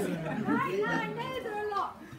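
Indistinct talking: voices speaking among a seated group, with no clear words.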